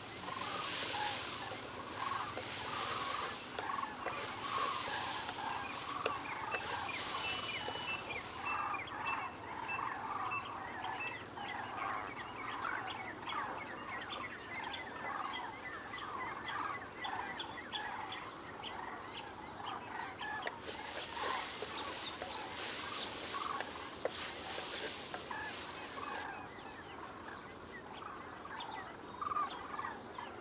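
Okra sizzling in a clay pot over a wood fire, a hiss that comes and goes in waves during the first several seconds and again about two-thirds of the way through. Many short bird calls go on throughout.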